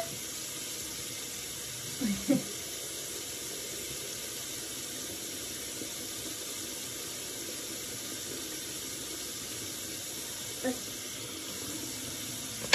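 Water running steadily from a bathroom tap into a sink.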